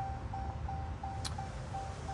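2016 Jeep Cherokee's warning chime repeating evenly at about three beeps a second with the driver's door standing open, over a low hum. One short click a little past the middle.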